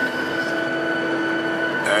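Steady drone inside the cabin of a Boeing 737-800 airliner waiting on the ground, with constant whining tones over the hum of its air system.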